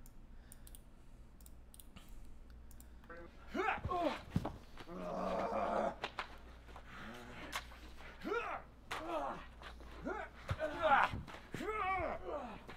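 Short shouts and grunts from actors in playback of fight-rehearsal footage, with one longer yell about five seconds in. A few light clicks come in the first three seconds.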